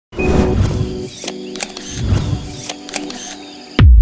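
Intro sound effect: a dense layer of tones and sharp clicks, cut off near the end by a sudden deep boom.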